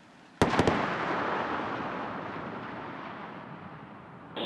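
Sonic boom of the returning Falcon 9 first stage: three sharp booms in quick succession about half a second in, followed by a rumble that fades slowly over the next three seconds.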